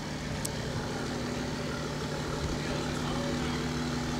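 A vehicle's engine running with a steady low hum, growing slowly louder, as it pulls up.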